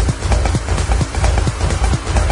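Minimal techno: a steady kick drum and deep bass under dense, sharp clicking percussion.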